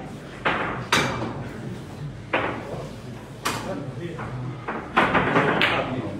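Hard clacks of billiard balls striking each other and the cushions, several sharp knocks a second or two apart, amid voices in the room.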